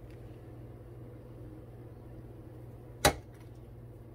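Powdered sugar being dusted from a small mesh strainer over a metal madeleine pan, faint under a steady low hum, with one sharp tap about three seconds in.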